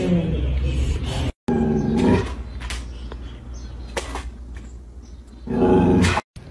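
A dog growling and vocalising loudly, cut off suddenly about a second and a half in. More loud dog vocal sounds follow, with a few clicks in a quieter middle stretch.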